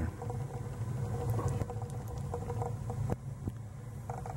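Steady low hum of a natural-gas boiler and its hydronic heating system running, with a faint steady tone above it and a few light clicks.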